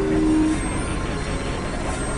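Experimental electronic noise music from synthesizers: a dense, rumbling drone-and-noise texture. A held tone steps down in pitch at the start and stops about half a second in.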